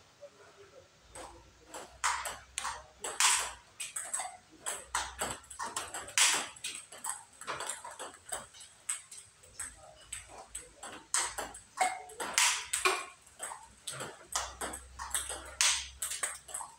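Table tennis balls being hit in a multiball drill: a quick, irregular run of sharp clicks as the ball is fed, bounces on the table and comes off the rubber-covered paddles. Every few seconds comes a much louder crack, the forehand smash in a spin-then-smash combination.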